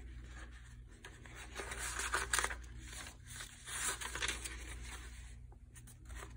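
Paper pages of a handmade junk journal being turned and handled: several soft rustles and flicks of paper, over a faint low steady hum.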